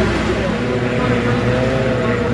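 Racing hydroplane engines of the 2.5-litre class running at speed on the water: a steady, unwavering engine note over a dense low rumble.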